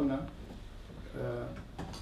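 A man speaking to a gathering in a small room, with short pauses between phrases and a brief knock near the end.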